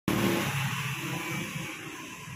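Street traffic: a passing motor vehicle's engine, loudest at the start and fading away.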